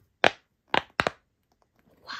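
Silicone UFO pop-it ball bubbles being pushed through: four sharp, crisp pops in the first second or so, the last two almost together.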